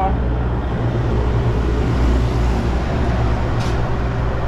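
Street traffic: vehicles, among them an SUV and a box truck, drive past with a steady low rumble of engines and tyres, and there is a brief hiss near the end.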